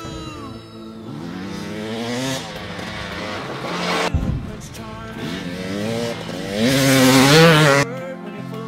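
Husqvarna TE 300 two-stroke dirt bike engine revving hard as it rides through the trail, its pitch sweeping up and down over rock music. The loudest rising surge of revs comes near the end and cuts off abruptly.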